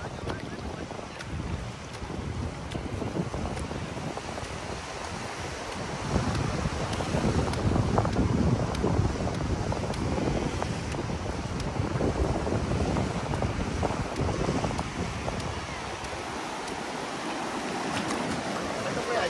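Wind buffeting the microphone over the steady wash of small surf waves in shallow sea water. It swells louder about six seconds in.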